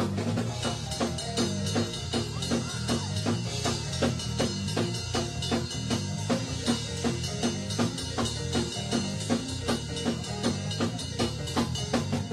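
Live drum kit playing a fast, steady beat with bass drum and snare, over low bass notes from the band.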